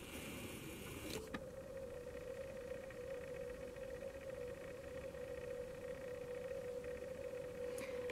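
Faint steady hum holding one even tone, with a soft click about a second in.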